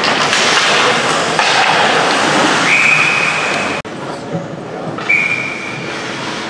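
Ice hockey referee's whistle: one long blast about halfway through, stopping play, and a second, shorter blast near the end, over crowd voices and rink noise.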